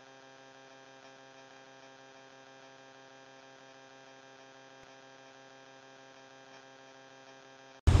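Faint, steady electrical hum with many even overtones, unchanging in pitch, cutting off abruptly near the end.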